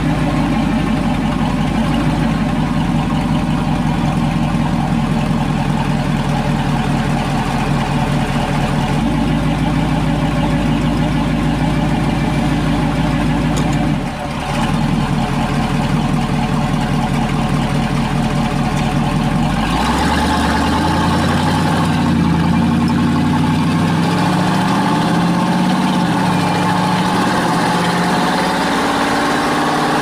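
The 1934 Ford pickup's engine, breathing through a tunnel ram with two Holley 450 four-barrel carburetors, heard from inside the cab. It runs at steady low revs for most of the first two-thirds, then revs up and pulls away.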